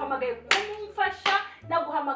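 A woman's upset voice, interrupted by two sharp hand claps, one about half a second in and one just over a second in.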